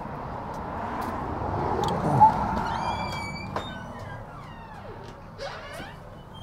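A vehicle passing on the street, its noise swelling to a peak about two seconds in and then fading. Later, several short high chirping tones follow.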